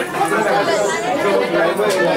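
Many people talking over one another at once: a crowd's steady, overlapping chatter.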